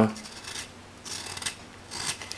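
Knife blade shaving wood: an X-Acto hobby blade set in a homemade handle cutting into the edge of a wooden board, with soft scraping strokes.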